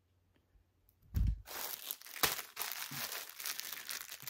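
A thump about a second in, then continuous crinkling and rustling of a mail package's packaging as it is handled and opened by hand.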